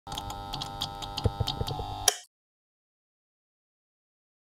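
Animated logo intro sound effect: regular ticking, about four ticks a second, over sustained electronic tones, ending on a sharper hit and cutting off about two seconds in.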